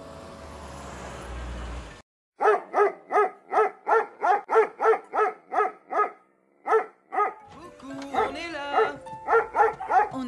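Rapid, evenly spaced yapping like a small dog barking, about four yaps a second, with a short break midway and a gliding pitched passage before it resumes. It is preceded by about two seconds of rising noisy rumble that cuts off suddenly.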